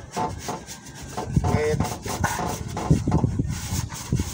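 Cloth or hand rubbing over dusty engine-bay parts in irregular scraping strokes, as the parts are wiped clean.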